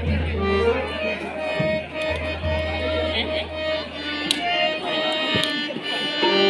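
Live theatre accompaniment: a harmonium holding long notes over hand-drum strokes, played through a PA system with a low steady hum underneath until near the end.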